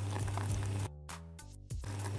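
Raspberries simmering in a saucepan: a faint sizzle over a steady low hum, with a much quieter gap of under a second in the middle.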